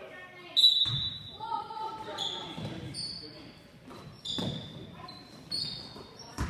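A basketball bouncing on a hardwood gym floor, a few separate thuds, with sneakers squeaking sharply on the court, the loudest squeak about half a second in. Voices carry in the background.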